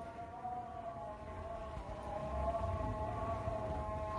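A faint sustained tone made of several pitches, wavering slightly, like a distant siren, over a low rumble.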